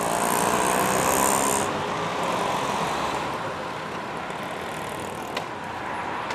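Road traffic: cars and motorcycles passing on a busy street, a little louder for the first second and a half or so and then a steady hum, with one short click near the end.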